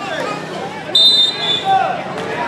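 Referee's whistle: one short, shrill blast about a second in, over crowd chatter and voices around the court.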